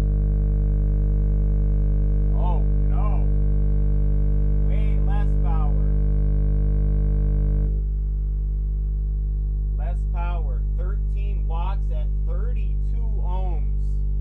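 Kicker Comp C 12-inch subwoofer in a sealed box playing a steady 50 Hz test tone at high excursion, a loud low hum with a ladder of overtones. Its level steps down slightly about eight seconds in, as the power going into it falls.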